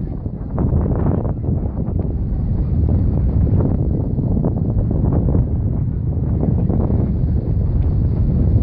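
Wind buffeting the microphone in a steady low rumble.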